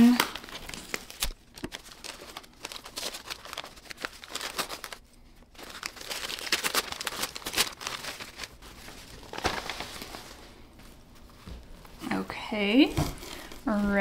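Paper wrapping around a potted plant being unfolded and pulled off by hand, crinkling and crackling in irregular rustles.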